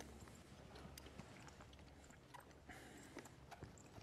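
Faint, irregular hoof thuds of a horse on soft arena dirt as it walks off and breaks into a lope (canter).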